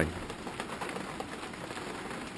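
Thunderstorm rain falling steadily on a brick patio and the equipment standing on it: an even hiss of big, splodgy drops.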